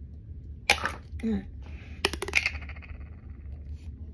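A child's sudden burst of breathy laughter and laughing breaths, with a few small clicks from a plastic Play-Doh tub being handled about two seconds in.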